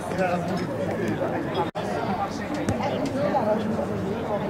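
Indistinct voices of several people talking and calling out, overlapping, with a momentary drop-out about two seconds in.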